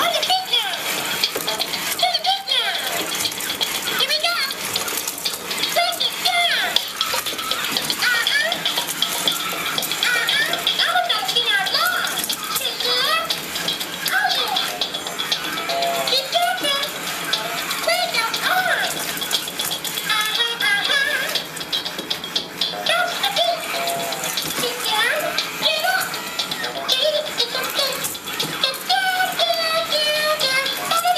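Elmo Live robot toy, stripped of its fur, performing a routine: its small speaker plays music with Elmo's voice talking and singing, over a rattling of its plastic mechanism as it moves its arms and body.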